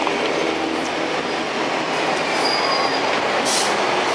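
Steady, fairly loud rushing noise of passing street traffic, with a few faint high squealing tones.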